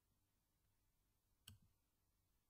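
Near silence, broken by a single faint click about one and a half seconds in.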